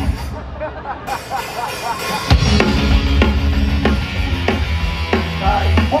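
Live hard rock band: a sparse electric guitar part, then drums and bass crash in about two seconds in and the full band plays on with steady drum hits.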